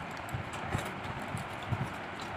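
Hands mixing and scooping rice on steel plates while eating, with irregular soft knocks and faint clicks, over a steady hiss.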